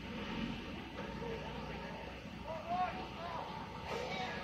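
Steady machinery hum from a concrete mixer truck and concrete pump running at a distance. Indistinct voices talk over it in the second half.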